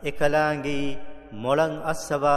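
A man chanting Quranic Arabic in melodic tajweed recitation, holding long steady notes. Two drawn-out phrases with a short break just past a second in.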